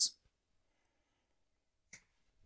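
Near silence between spoken phrases, with one short voice sound at the very end.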